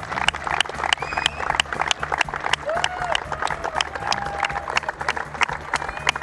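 A group of players clapping in applause, the claps coming at an even pace of about three a second, over a steady low hum with a few brief pitched calls in the middle.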